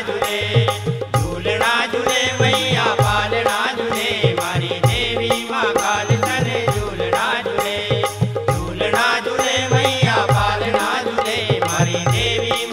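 Instrumental break in a Malvi devotional Mata bhajan: a wavering melody line over a steady drum beat.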